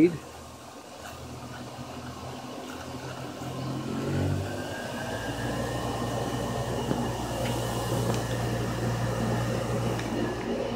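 1925 Spencer Turbine Cleaner's electric motor and turbine blower, run from a variable frequency drive, speeding up from 40 Hz to full speed (60 Hz). A hum and whine rises in pitch and grows louder over the first five seconds or so, then runs steadily.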